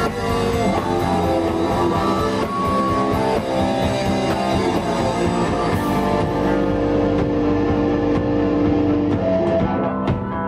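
Live punk rock band playing an instrumental passage: electric guitars and bass over a drum kit, with no singing. In the second half the guitars hold long ringing notes.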